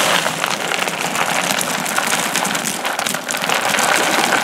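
Caramel corn being stirred and scooped with a red plastic scoop in a collection bin: a steady, dense crackling rattle of many small crisp pieces tumbling against each other and the scoop.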